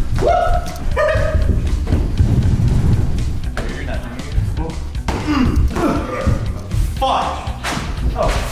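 Background music with men's short shouts and exclamations, and a few thumps of players running and lunging around the furniture while keeping a balloon in the air.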